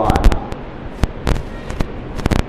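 A rapid, irregular run of sharp cracks and pops, about ten in two seconds, the loudest about a quarter second in, over a low steady background noise.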